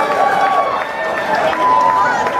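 Crowd of people talking and calling out at the end of a live song, with several long, held shouts over the steady chatter.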